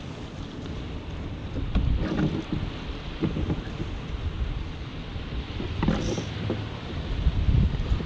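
Wind buffeting the microphone in uneven gusts over a choppy sea around a kayak.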